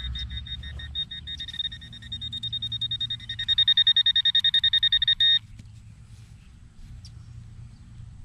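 Garrett handheld pinpointer beeping in quick, evenly spaced pulses. The beeps grow louder about three and a half seconds in, the sign of metal close to its tip, then cut off suddenly after about five seconds.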